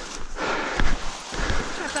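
Footsteps tramping through dry tussock grass, with the stems rustling and brushing, in an uneven rhythm of soft knocks.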